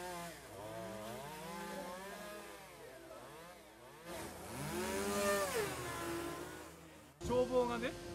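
A chainsaw-type small engine revving up and down in long rises and falls, loudest in a rising-then-falling run about four to six seconds in. It ends abruptly about seven seconds in.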